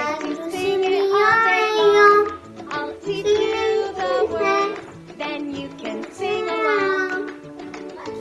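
A young girl singing a cheerful children's song in a high voice, phrase after phrase.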